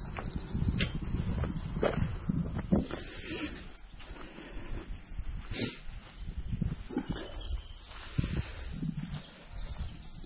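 Footsteps crunching along a gravel track, irregular thuds about once a second, with wind rumbling on the microphone.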